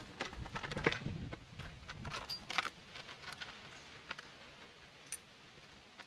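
Faint small clicks, taps and rustles of a package of metal scope rings being opened and handled, thinning to a few isolated clicks after about three seconds.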